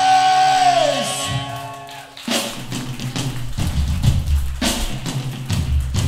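Live hardcore punk band: a held note slides down and dies away in the first second. Then, about two seconds in, the drum kit and bass come back in with cymbal crashes and a steady beat.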